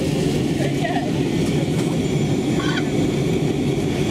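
Steady cabin noise of an easyJet jet airliner in flight: the engines and airflow past the fuselage as a loud, even, low rumble.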